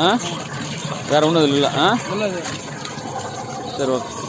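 Water splashing and churning in a plastic water tank, stirred by a submerged impeller air pump that is running and being moved about, under a man's intermittent talking.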